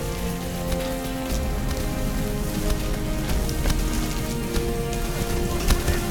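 Film score of long held notes that step slowly in pitch, over a steady rain-like hiss, with a few sharp knocks scattered through it.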